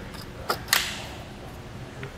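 Old Saris bike-rack wheel tray being worked loose and slid off the rack's bar after its knob is loosened: two sharp clicks about half a second in, then a brief scrape.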